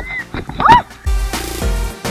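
Background music: a break with a brief high rising call-like sound, then a heavy bass beat coming back in about a second in.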